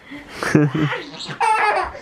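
A toddler laughing in quick bursts during a tickling game, then a higher, drawn-out vocal squeal near the end.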